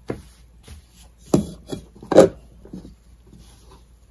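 Cotton fabric being folded and smoothed by hand on a wooden surface: cloth rubbing and rustling, with a few short pats or knocks of the hand against the wood, the loudest about two seconds in.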